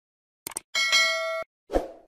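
Subscribe-button animation sound effects: a quick double click, then a bright bell chime of several ringing tones that lasts under a second and cuts off suddenly, followed by a short dull thump near the end.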